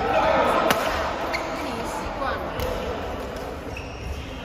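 Badminton rally on an indoor court: a sharp racket strike on the shuttlecock a little under a second in and a lighter hit about half a second later, with shoe squeaks on the court mat and a player's voice, echoing in the hall.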